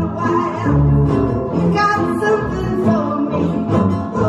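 A woman singing to two acoustic guitars played together in a steady, bouncy folk-pop strum.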